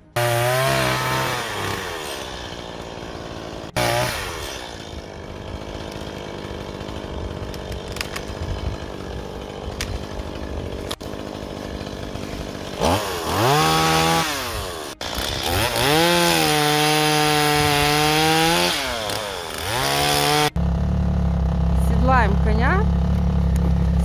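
Chainsaw running and cutting a fallen log, its engine pitch rising and falling with each rev, in several short clips that break off abruptly. Near the end a snowmobile engine takes over, running low and steady.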